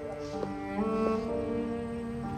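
Background score of slow, sustained bowed strings led by a cello, with new notes coming in about half a second and a second in.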